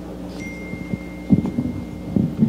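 Meeting-room sound system hum with a faint, steady high-pitched tone that comes on about half a second in and holds, likely from the microphone and PA chain. A few soft low knocks come in the middle, like a microphone being handled.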